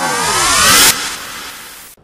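Transition whoosh sound effect: a loud rush of hiss threaded with many gliding tones, some rising and some falling across each other. The hiss cuts off about a second in and the rest fades away.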